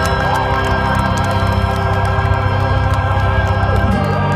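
Music carried by sustained organ chords, held steady, sliding down into a new chord near the end.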